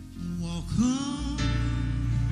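Live soul-ballad music: a woman's singing voice slides up into a held note about three-quarters of a second in, over band accompaniment, with a deep bass coming in strongly about halfway through.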